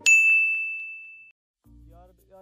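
A single bright ding: one struck, bell-like tone that rings out and fades away over about a second, a title-card sound effect. After a brief silence, quiet music begins near the end.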